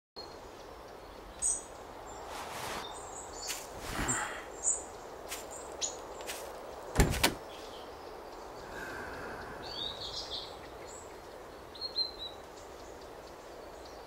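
Quiet open-air ambience with faint bird chirps, broken by a few soft clicks and knocks from a car door being opened; the loudest knock comes about seven seconds in.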